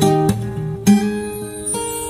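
Steel-string acoustic guitar with a capo, fingerpicked: plucked notes and chords ringing on, with a fresh strong pluck just under a second in.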